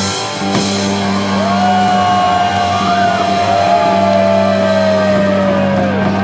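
Live glam rock band holding a sustained chord on electric guitar and bass after a crash near the start, with no drum beat. A long high lead note comes in about a second and a half in, bends and slides slowly down over the held chord.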